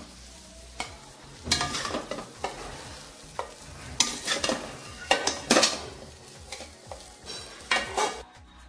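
Metal spatula scraping and knocking against a metal pan in irregular strokes, scooping chopped chicken kothu parotta out of the pan onto a plate.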